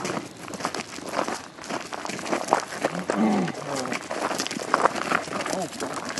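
Footsteps of several people walking on a trail, a run of short scuffs and crunches, with low, indistinct talking in a few spots.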